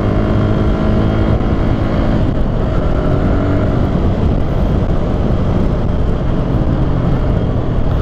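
Benelli 150S single-cylinder four-stroke engine running steadily under way. About two seconds in its note fades as the throttle comes off for a front-brake test, leaving a steady rush of wind and road noise.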